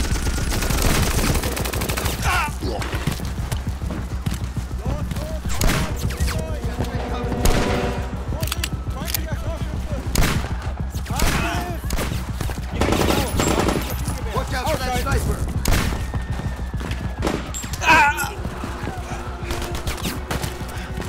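Battle sound effects: dense, continuous gunfire with rapid machine-gun bursts and rifle shots, and shouting voices breaking through at times.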